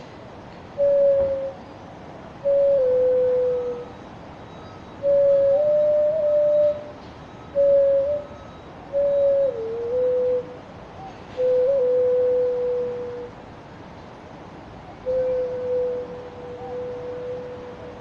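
Xun (Chinese clay vessel flute) playing a slow melody of pure, breathy-free held notes in a narrow low range. The notes come in short phrases separated by pauses, with brief grace-note flicks and a small dip in pitch. The final note is held about three seconds and fades away.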